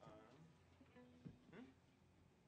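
Near silence: room tone with faint, brief murmurs of voices.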